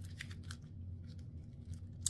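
A tarot card deck being shuffled and handled, giving a few soft papery clicks and flicks, mostly in the first half second.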